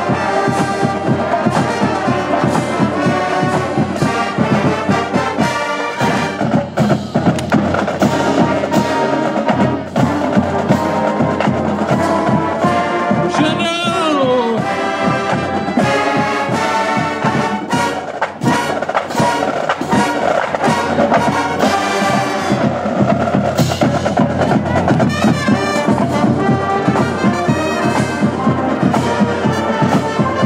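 Marching band playing: full brass with trumpets and trombones over a steady drum beat. About halfway through, a brass line slides down in pitch.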